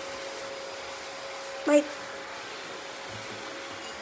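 Steady background hum with a faint even hiss, holding one constant tone, with a single short spoken word a little before halfway through.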